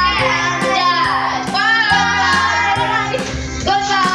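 Music: a song with a high sung voice over a steady beat and bass notes.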